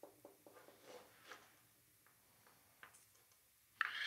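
Faint, small ticks and rustles of fingers working the stripped end of an instrument cable, twisting its braided shield strands together, mostly in the first second or so. A brief hiss comes near the end.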